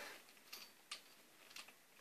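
Near silence with a few faint, short ticks spread over the two seconds, from a steel bar clamp being screwed tight by its handle.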